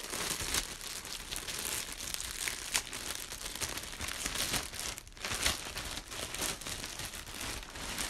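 Thin clear plastic bag crinkling continuously as it is handled and pulled open, with a few sharper, louder crackles along the way.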